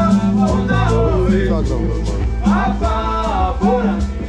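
A live band playing: hand drums and steady percussion at about five strokes a second over deep bass notes, with a voice singing in the second half.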